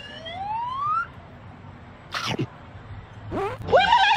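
A smooth, rising whistle-like glide that ends about a second in, then a short swish around two seconds. Near the end come loud, startled shouts from a man and a woman.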